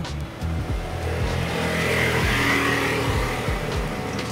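A road vehicle passing by on the street: a broad engine-and-tyre noise that swells to a peak about halfway through and then fades away.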